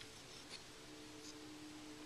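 Near silence: room tone with a faint steady hum and one small tick about half a second in.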